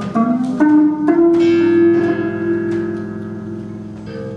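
Live instrumental music on plucked and electric string instruments: a few quick notes with upward pitch slides, then a held note that rings on and slowly fades.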